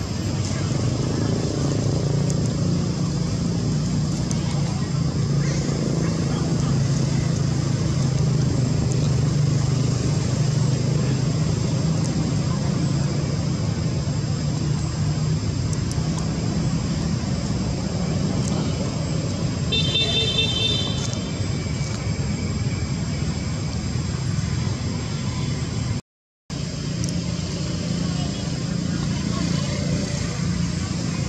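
Steady outdoor background rumble and hiss, of the kind road traffic makes. About twenty seconds in, a brief high-pitched call or tone sounds. The sound cuts out for half a second near the end.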